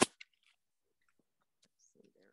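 A sharp click right at the start and a fainter one just after, then near silence with a few faint ticks: handling noise of a phone being taken out of its holder.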